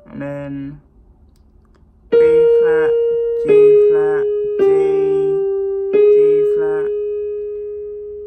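Electronic keyboard: four single notes struck about a second apart, each held and slowly fading, the first a little higher than the other three. A short spoken word comes just before them, and a voice is heard briefly between the notes.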